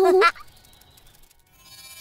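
A cartoon baby's short vocal cry with a wavering pitch, lasting under half a second, followed by a quiet stretch with a few faint ticks; background music comes in at the end.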